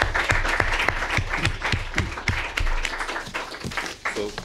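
Audience applauding: many quick, irregular claps that die away near the end.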